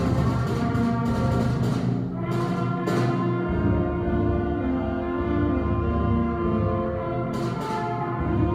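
A school concert band playing: held chords from the woodwinds and brass, with percussion strokes through the first three seconds and again near the end.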